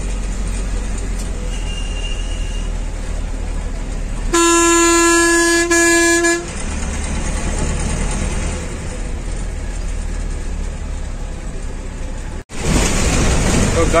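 Bus engine and road noise heard from inside the cabin, with a loud horn held for about two seconds, briefly broken, around four seconds in. The sound drops out for an instant near the end.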